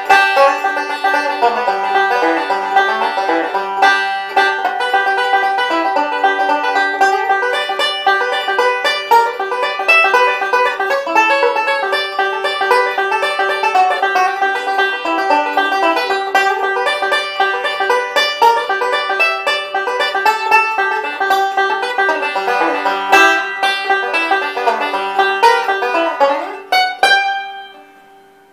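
A 1968 Gibson TB-100 tenor-banjo pot converted to a five-string banjo, fitted with a Stewart-MacDonald archtop tone ring, fingerpicked in bluegrass style as a steady stream of bright notes. Near the end it finishes on a quick rolled final chord that is left to ring and die away.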